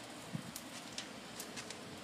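A few faint, scattered clicks of metal tongs against the smoker's grate as a smoked turkey leg is gripped and lifted out.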